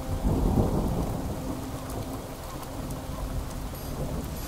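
Recorded thunderstorm with no music playing: a low rolling rumble of thunder that swells near the start and slowly dies away, over steady rain.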